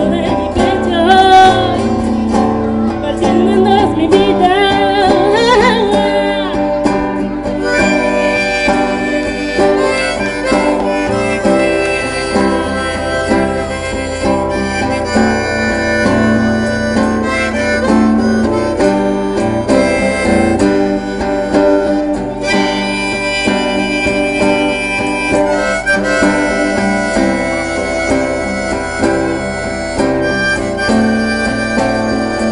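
Live band music: strummed guitars under a singing voice for the first several seconds, then a lead melody of long held notes over the guitars.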